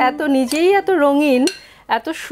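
A woman talking, with a few sharp clinks of a metal spoon against a glass bowl as a salad is mixed. The talking stops about one and a half seconds in.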